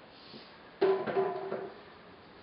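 A single sharp knock about a second in that rings briefly with a few steady tones, a hard container being handled.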